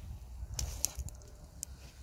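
Wood fire of split kindling crackling in a metal fire pit: a handful of sharp pops over a low steady rumble.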